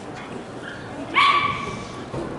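A single short, high-pitched cry about a second in, starting sharply and fading away within a second.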